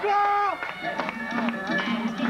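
Audience members whooping, a held high shout that falls away about half a second in; then a recorded music track starts, with short clicking hits and brief notes.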